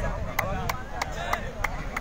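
Six sharp, evenly spaced strikes, about three a second, over a murmur of voices.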